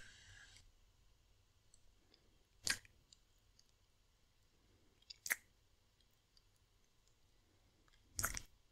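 Two wet kissing sounds close to a binaural microphone, about two and a half seconds apart, with faint mouth clicks between them.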